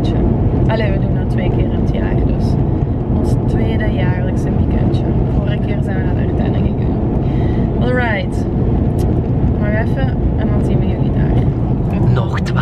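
Steady low road and engine rumble inside a moving car's cabin, with a person's voice speaking briefly now and then over it.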